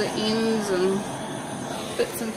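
Heat gun blowing steadily over freshly poured acrylic paint to pop air bubbles and bring up the silicone. A woman's voice draws out one word over the first second.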